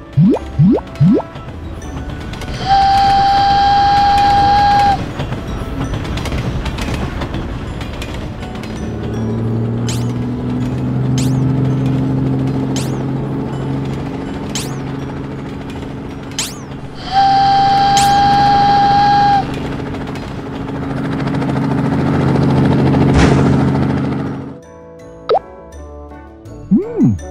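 Cartoon sound effects over children's background music: quick springy boing glides at the start, then a long steady whistle tone lasting about two seconds that sounds twice, early and again about two-thirds through. In between, a low steady hum with scattered sharp clicks swells and then cuts off shortly before the end.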